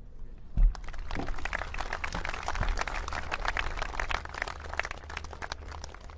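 Large outdoor audience applauding at the close of a speech, the clapping starting about a second in and thinning out near the end. A single low thump just before the clapping begins.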